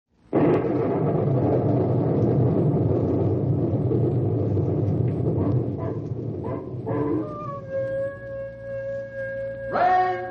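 Radio drama opening sound effects: a loud rushing roar starts suddenly and lasts about seven seconds. A long, steady howl follows, and a choir comes in right at the end.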